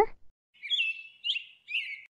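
Bird chirping, three short high chirps over about a second and a half on an otherwise silent track, used as a transition sound between sentences.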